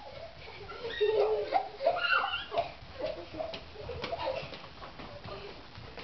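A small child's voice, babbling and squealing without clear words, fairly faint, with a few light knocks about three to four seconds in.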